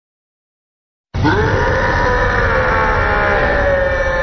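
Silence, then about a second in a loud, sustained mass of many held pitches over a deep rumble starts abruptly and sags slowly in pitch: the opening blast of a film trailer's soundtrack.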